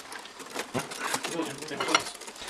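Indistinct low speech over clicks and scrapes of a screwdriver working the terminal screws of an air conditioner's indoor-unit wiring block.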